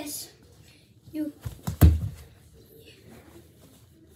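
A soccer ball kicked with a bare foot, one dull thump a little under two seconds in.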